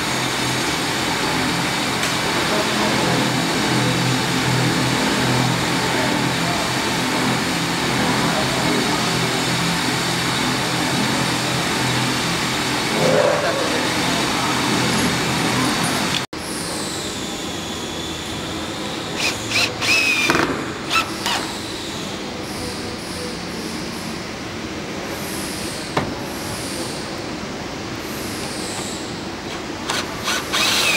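Steady workshop background noise fills the first half. After a cut it turns quieter, with short bursts of a cordless drill driving screws into a pontoon deck's corner wrap angle, each burst ending in a falling whine as the motor winds down.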